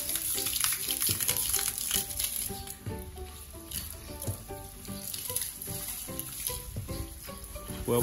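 Water spraying from a garden hose nozzle onto an elephant's wet hide during a bath, a steady hiss with uneven spattering.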